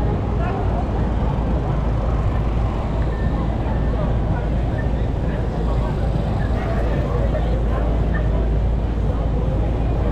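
Busy city street ambience: overlapping chatter of passers-by in a dense crowd over a steady low rumble of traffic.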